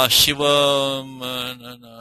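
A man's voice intoning in a level, chant-like tone: syllables held at one steady pitch for up to a second, with short breaks, the pitch dipping near the end.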